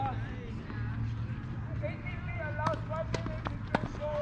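Tennis ball being hit during a doubles rally on a grass court: three sharp knocks in the second half, the last the loudest, with people talking in the background.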